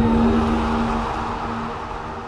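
A sudden deep boom with a low rumble and a steady held tone, slowly fading: a cinematic sound-design hit under fight footage.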